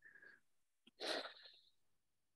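Near silence with one short, breathy noise from a person about a second in, like a sharp breath or sniff picked up by a call microphone.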